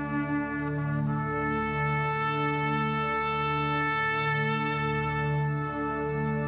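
Shofar (ram's horn) sounded in one long blast that steps up to a higher note about a second in and is held steady nearly to the end, over soft background music.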